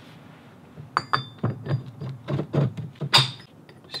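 Pieces of a machined steel rivet die being pulled apart and set down on a wooden workbench: a run of metal clinks and knocks starting about a second in, one near the start ringing briefly, the loudest near the end.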